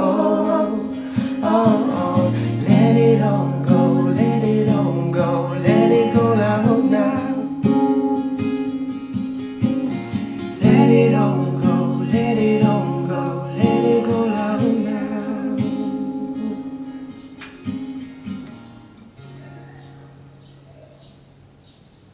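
Acoustic guitar played under a man's and a woman's voices singing together. Near the end the singing stops and the guitar's last chord rings out and fades away as the song ends.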